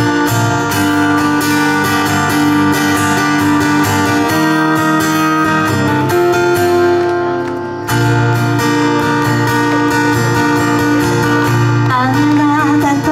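Acoustic guitar strumming chords in an instrumental break between sung lines. About seven seconds in, a chord is left to ring and fade, and the strumming starts again about a second later.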